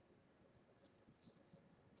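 Near silence, with two faint, brief jingles of metal bangle bracelets as an arm is raised, about a second in.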